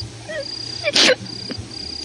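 Crickets trilling in a thin, steady high tone that breaks off and resumes, with one short, sharp loud burst about a second in.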